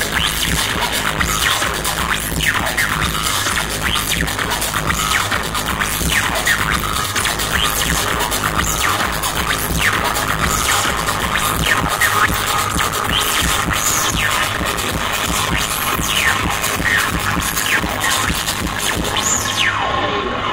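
Live electronic music played loud over a concert PA, with a steady bass and repeated short sweeping effects gliding in pitch over it. A held high tone comes in about halfway through.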